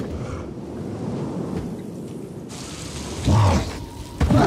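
Film sound effects of a snowy landscape: a steady rush of wind over a low rumble, with a louder rumbling surge about three seconds in.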